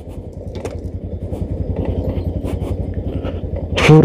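Motorcycle engine running at low revs, a steady rapid low pulsing, with scattered small knocks and rattles from riding over a rough, rutted dirt road.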